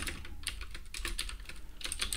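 Typing on a computer keyboard: a quick, irregular run of key clicks.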